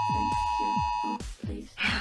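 Phone emergency-alert tone: a steady, shrill two-note beep that cuts off suddenly about a second in. It plays over background music with a steady beat.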